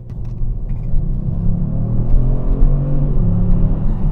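Kia Stinger GT1's 3.3-litre V6 accelerating under throttle, heard from inside the cabin: the engine note climbs in pitch and loudness over about three seconds, then drops a step near the end.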